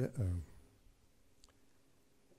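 A man's voice trails off in a hesitation, then quiet room tone with one faint click about halfway through.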